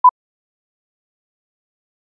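A single short, steady beep right at the start: the two-pop sync tone of a countdown leader, sounding on the "2" frame as an audio-picture sync marker two seconds before the programme starts.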